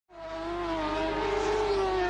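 Racing sidecar outfits' two-stroke engines at high revs, one steady held note that fades in at the start and grows louder.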